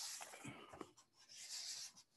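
Faint breath sounds and small mouth clicks in a pause between words, with a soft inhale shortly before speech resumes.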